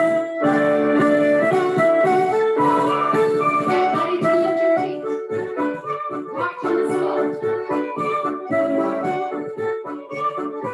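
Recorded band music with a melody over sustained notes, played for a march. The playing is fuller in the first half and thins out and drops a little in level about halfway through.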